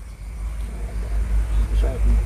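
A low, steady rumble that grows stronger near the end, with a voice starting just before the end.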